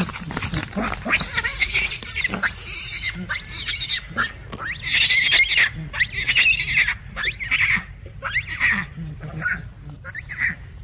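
Long-tailed macaques screaming in a chase and fight: a run of harsh, shrill shrieks with short breaks, some sliding up and down in pitch, loudest about five to six seconds in.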